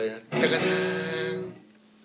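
Acoustic guitar chord struck once with a sharp strum and left ringing for about a second, then cut off quickly by muting the strings: the 'corte', a percussive stop, called a 'golpe'.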